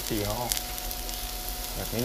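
Chopped garlic sizzling in hot oil in a nonstick frying pan: a steady hiss.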